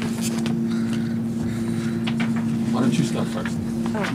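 A steady low hum runs under faint room noise and distant murmured voices. The hum stops at the very end, as a voice comes in close to the microphone.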